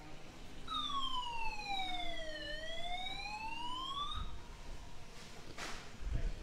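An electronic siren-like tone that starts about a second in, glides slowly down in pitch and then back up again, and stops after about three and a half seconds.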